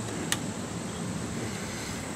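A single sharp click about a third of a second in, from hands working on a lawn mower's engine, over a steady low background hum.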